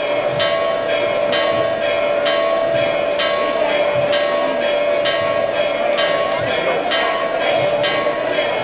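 Church bells pealing in a rapid, even run of strokes, about two to three a second, over a steady ringing hum.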